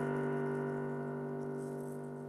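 The song's closing chord on an electric keyboard, held and slowly fading away.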